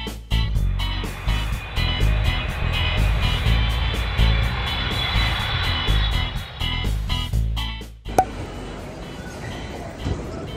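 Upbeat channel-intro music with a steady beat and a rising rush of noise in the middle, closing on a sharp hit about eight seconds in. After it comes the quieter hubbub of a crowded airport terminal hall.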